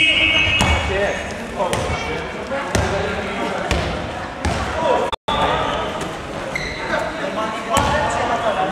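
A handball bouncing on a sports-hall floor, a sharp knock roughly once a second, among players' shouts that echo around the hall. A whistle blast ends just after the start.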